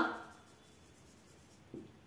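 Marker pen writing on paper, faint. A woman's voice trails off in the first half second, and there are a couple of short soft sounds near the end.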